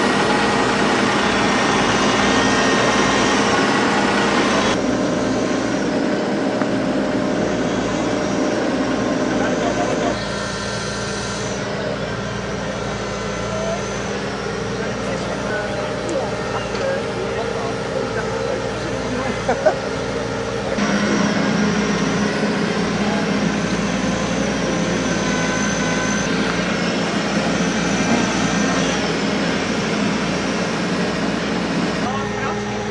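Hydraulic excavator diesel engines running steadily, mixed with bystanders' voices and a laugh about twenty seconds in. The sound drops and returns abruptly a few times.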